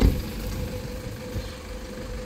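An engine running steadily in the background, a low rumble with a steady hum. A thump right at the start.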